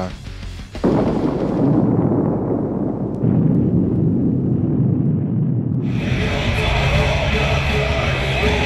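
A loud explosion-like sound effect bursts in suddenly about a second in and carries on as a dull rumble. About six seconds in it gives way to music over crowd noise.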